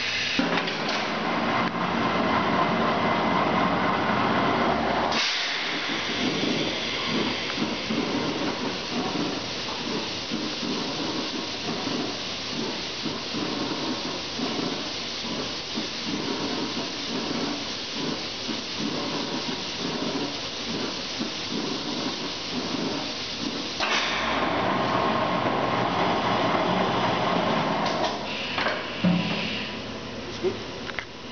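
Pneumatic Richmond steel-drum dedenter running a cycle. Compressed air hisses for about five seconds, then the machine runs with a rough rattling rumble for most of the cycle while the arms hold the barrel. The hiss returns near the end, followed by a few sharp knocks as it finishes.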